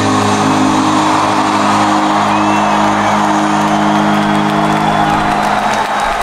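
A rock band's final chord held and ringing out while a large concert crowd cheers and whoops. The held chord stops near the end.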